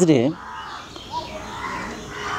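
Faint bird calls in the background, heard twice, after a spoken word ends.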